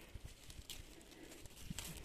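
Faint handling noise: soft low bumps and a couple of light clicks as a hand brushes through the leaves of leafy vegetable plants.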